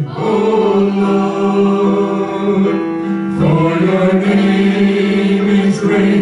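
A small group of voices, a woman and two men, singing a slow worship song in unison and harmony through microphones, with long held notes and a change of note about halfway through.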